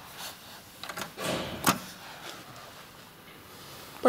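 Elevator's hinged swing door being unlatched and pushed open by its handle: a few soft knocks and one sharp click a little under two seconds in.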